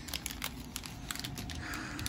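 Scattered light clicks and faint rustling of plastic shop-vac parts and wrapping being handled.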